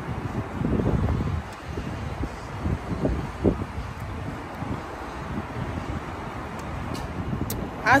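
Low, uneven rumble of street traffic mixed with wind buffeting the microphone, with a few louder swells.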